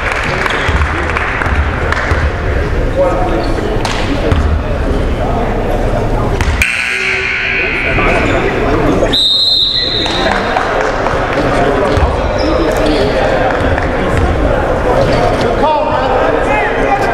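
Gymnasium din during a stoppage in a basketball game: many voices of players and spectators talking over one another in a large echoing hall, with a basketball bouncing on the hardwood floor. A brief shrill high tone sounds about nine seconds in.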